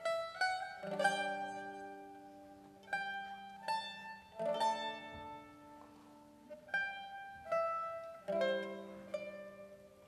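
Mandolin orchestra playing a slow, quiet passage: sparse plucked melody notes, each ringing and fading, over held low chords that come in three times.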